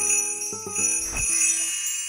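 Cartoon magic-wand sound effect: a bright, tinkling chime with ringing high notes, over light background music.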